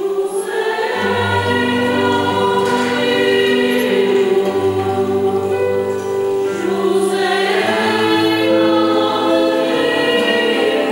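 Mixed choir of men and women singing sustained chords, accompanied by acoustic guitars and keyboard; low notes join about a second in.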